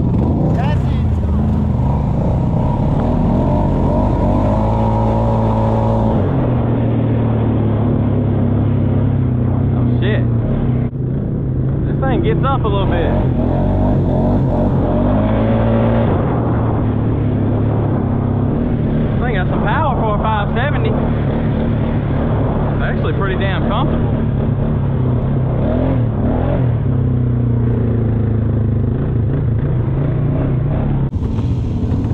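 ATV engine running while the quad is ridden along a trail, a steady engine note that shifts in pitch a few times as the throttle changes.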